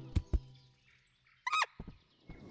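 A dropped nut bouncing on the ground with two soft thuds, then, about a second and a half in, a cartoon rodent's short squeak that falls in pitch, followed by a couple of faint knocks.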